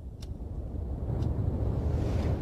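A deep rumble that swells louder through the two seconds, the sound effect for the seafloor cracking open, with a clock ticking once a second over it, twice here.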